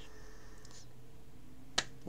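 Faint steady room tone with a single sharp click about three quarters of the way through, just before speech resumes.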